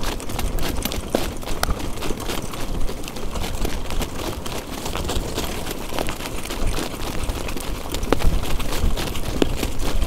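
Hoofbeats of a harness horse and the running of its jog cart over the track, heard as irregular clicks under steady wind rumbling on the microphone.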